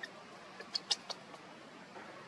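A newborn macaque makes a few short, high-pitched squeaks in a quick cluster about a second in.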